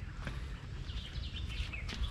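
Low, steady background rumble with a few faint bird chirps.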